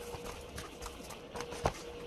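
A few faint ticks and one sharp click about one and a half seconds in, over a faint steady hum.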